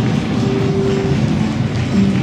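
Acoustic guitar played by a street musician, mixed with a steady, loud low rumble.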